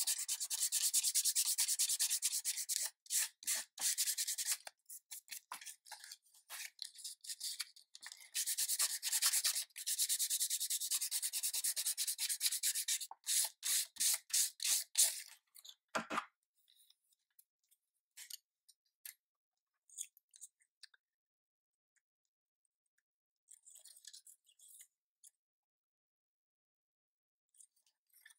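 Bassoon cane rubbed back and forth on 220-grit sandpaper to sand its underside flat, in quick rasping strokes. The sanding comes in two long spells with a broken patch between and stops about 15 seconds in, followed by a single soft knock and then only faint handling ticks.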